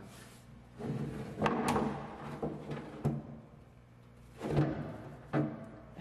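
A metal spindle cover being fitted onto a CNC mill's head: a series of hollow clunks and knocks as the panel is worked into place. The loudest is about four and a half seconds in.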